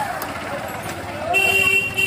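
A vehicle horn sounds one steady, shrill honk lasting about half a second, starting a little past halfway, over people talking nearby.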